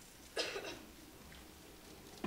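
A person coughs once, sharply, about a third of a second in.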